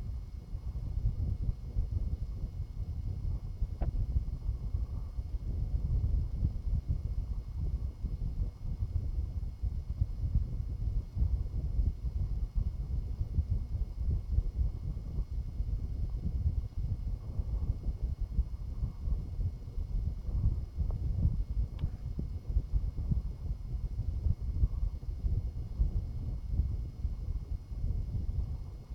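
Low, irregular rumbling noise on a phone's microphone, with a faint steady high whine and two soft clicks, one about four seconds in and one about twenty-two seconds in.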